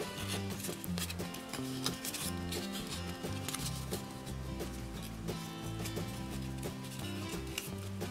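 Soft instrumental background music, a low melody stepping from note to note at an even pace, with faint rustling of cardstock being folded by hand underneath.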